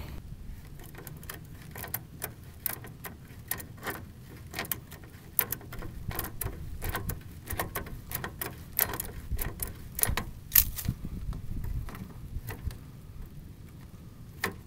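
Wrench working the transmission cooler line fittings at the bottom of the radiator: irregular metallic clicks and clinks, with low rumbling handling noise.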